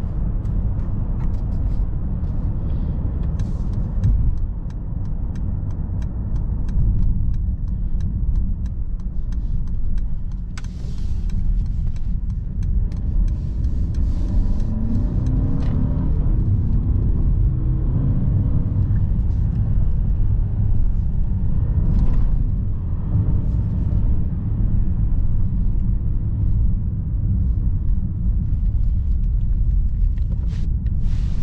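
Interior cabin sound of a 2022 Mercedes-Benz GLE 350 4Matic on the move: a steady low road and tyre rumble under its 2.0-litre turbocharged inline-four. A little after the middle the engine note rises as the SUV accelerates.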